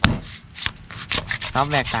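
Heavy cleaver chopping through a field rat carcass on a wooden chopping block: one hard chop at the start, a second about half a second later, then several lighter, quicker cutting strokes.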